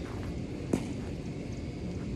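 Low, fluttering wind rumble on an outdoor phone microphone, with a single sharp click about three-quarters of a second in.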